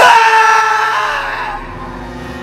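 A man's sudden, loud scream: one long cry that leaps up in pitch at the start, then fades over about a second and a half.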